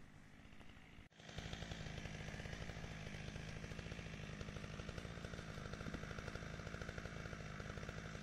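Faint rustling steps, then after a sudden break about a second in, a chainsaw engine running steadily and loud.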